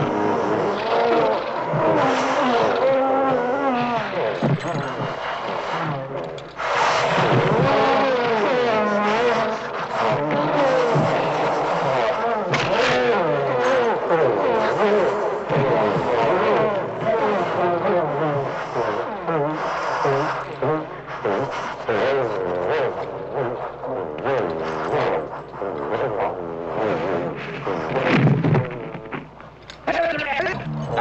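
Film monster sound effects: the roars and shrieks of fighting dinosaur-like creatures, several overlapping calls with wavering, bending pitch running almost without a break, dipping briefly about six seconds in and again near the end.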